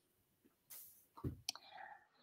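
Near silence broken by faint small sounds: a soft low thump and then a sharp click, about one and a half seconds in.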